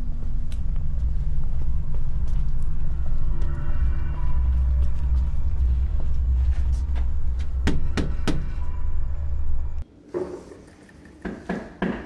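A loud, steady low rumble that cuts off suddenly about ten seconds in, with three quick sharp knocks shortly before it stops.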